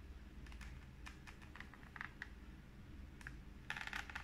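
Faint, scattered clicks and taps from hands handling an open hardcover picture book, with a denser run of clicks near the end, over a low steady hum.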